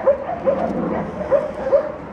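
A dog giving four short, high yips, spread through the two seconds.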